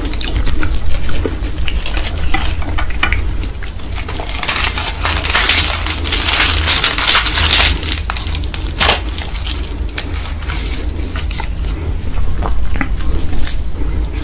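Close-miked handling sounds of crisp roasted seaweed sheets crackling and rustling as they are picked up and wrapped around stir-fried instant noodles, with sharp clicks of chopsticks and a denser crackly rustle through the middle. A steady low hum runs underneath.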